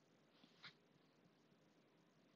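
Near silence: room tone, with one brief, faint high sound a little over half a second in.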